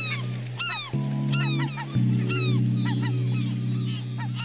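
Background music with sustained chords that change twice, overlaid with repeated short downward-sliding seagull cries. A high shimmering sweep comes in about halfway through.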